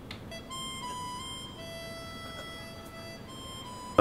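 A slow harmonica tune of long held notes: a note near the start steps down about a second in, a lower note holds through the middle, and the higher pitch returns near the end. It is played by a character on screen rather than being background score.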